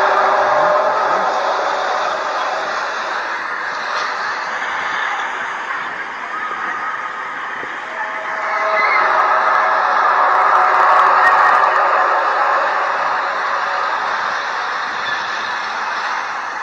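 One of the mysterious 'strange sounds in the sky': a long, very deep, horn-like drone of several steady tones over a dense hum. It swells again about eight seconds in and goes on without a break.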